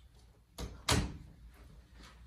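A hinged closet door being pushed shut: two knocks in quick succession, the second louder.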